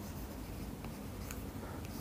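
Faint scratching and a few light taps of a stylus writing on a tablet, over low steady room noise.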